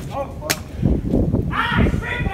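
A single sharp crack about half a second in, followed by uneven low rumbling noise and a short voice near the end.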